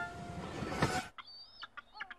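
Faint bird calls: a thin high chirp and a few short clucking notes in the second half, after a soft hiss in the first second.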